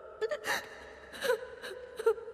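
A woman crying, with a few short sobbing gasps and whimpers.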